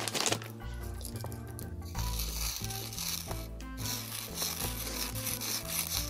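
A hand digging through a plastic bag of crackers, the bag rustling and the crackers rubbing against each other in a steady scratchy noise that picks up about two seconds in. Background music with a low bass line plays underneath.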